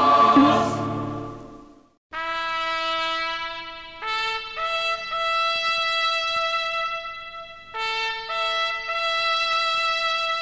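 A choir's final chord fades out, and after a brief silence a solo trumpet begins, playing long held notes one after another with short breaks between them.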